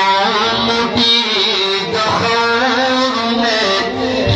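A man singing a Pashto naat into a microphone over a public-address system, in a melodic line of held notes that waver and bend.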